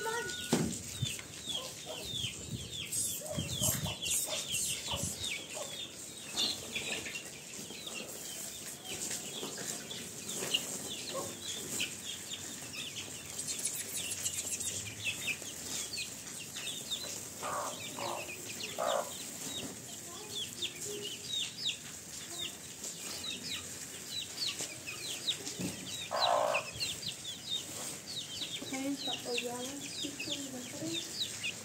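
A brood of young chicks peeping continuously: short, high, falling peeps, several a second. A few lower, louder calls stand out near the middle and again later.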